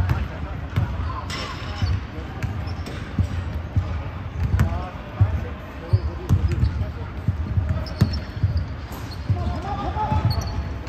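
A basketball bouncing and dribbling irregularly on a hardwood gym floor, with sharp clicks among the low thumps, during play in a large indoor gym.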